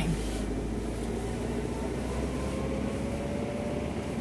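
A car's engine and road noise heard from inside the cabin while driving slowly: a steady low rumble with a faint engine tone that rises slightly in the second half.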